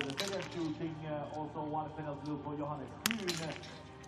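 Two sharp shots from a small-bore biathlon rifle fired from the standing position, one at the very start and one about three seconds later, with voices faintly in the background.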